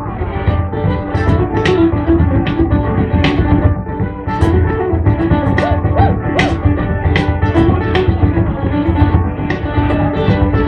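Live Irish traditional band playing an instrumental passage: strummed guitars and other plucked string instruments over a steady bodhrán beat.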